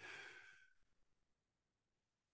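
Near silence, broken at the very start by one faint, short breath from a man at the microphone, lasting about half a second.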